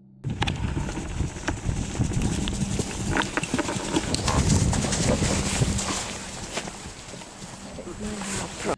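Outdoor rushing noise with many irregular sharp clicks and thuds through it, loudest in the middle, and low voices beneath.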